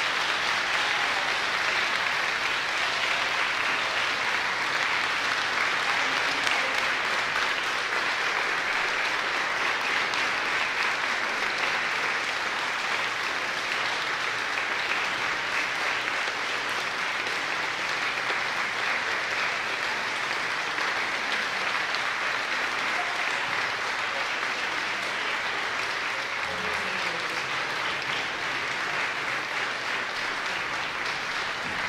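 Large audience applauding steadily, easing off slightly toward the end.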